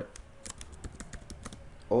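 Typing on a computer keyboard: a quick run of key clicks, about five a second.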